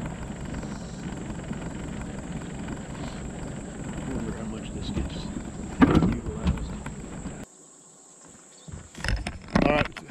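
A boat's outboard motor running steadily while under way. The drone stops abruptly about three-quarters of the way through, followed by quieter outdoor sound and a few knocks and a voice near the end.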